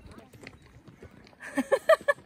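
A person laughing: a quick run of four or five loud, short bursts about one and a half seconds in, after a quieter stretch.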